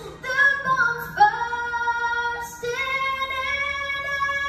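A young girl singing solo into a microphone over a PA system, holding long notes, with a short breath about two and a half seconds in before the next phrase.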